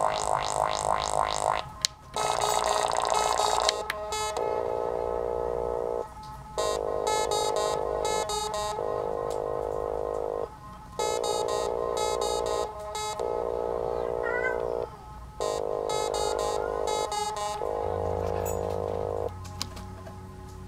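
A littleBits Synth Kit modular synthesizer playing buzzy electronic tones. It warbles rapidly for the first couple of seconds, then sounds a string of held notes of about two seconds each with short breaks between, as its knobs are turned. The notes stop just before the end, leaving a low hum.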